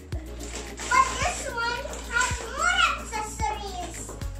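Excited, high-pitched voices of a young girl and a woman, with laughter, over background music.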